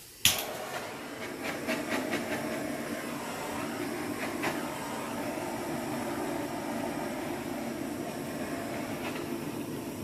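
Handheld butane torch lit with a sharp click, then its flame hissing steadily as it is played over wet acrylic pour paint to bring up cells.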